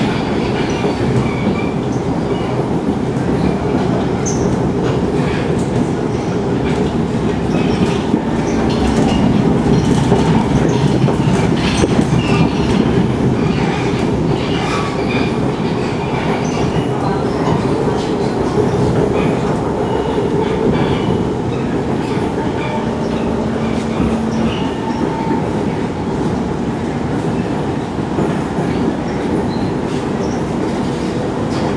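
Inside an SMRT C151 electric train car on the move: the steady running noise of wheels on track and traction equipment, swelling a little about a third of the way in. A few brief higher tones ride on top.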